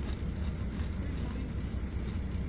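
Steady low rumble of a bus's engine and running gear heard inside the passenger cabin.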